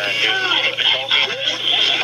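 A police taser cycling: a steady electric crackle that starts at once and stops near the end, with a person's voice over it.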